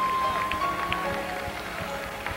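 Slow gospel worship music: a woman singing with soft accompaniment, one long high note held through the first second or so.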